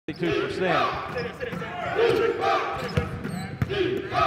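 A basketball bouncing on a hardwood court: a few sharp, irregular thumps, heard under a commentator's voice and arena crowd noise.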